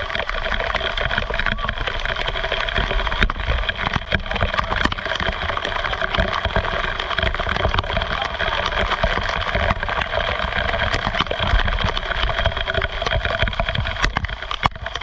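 Waterfall pouring down a rock face close by, a loud steady rush of falling water, with a constant crackle of spray and droplets striking the camera.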